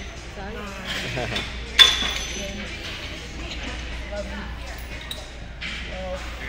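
A single sharp metallic clink of gym weights about two seconds in, ringing briefly, over the low murmur of voices in the gym.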